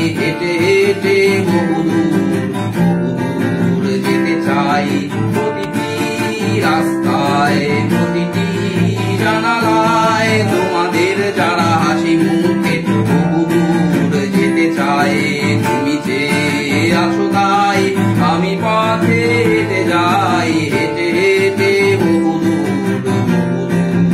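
Acoustic guitar strummed in steady chords, with a man singing along in Bengali.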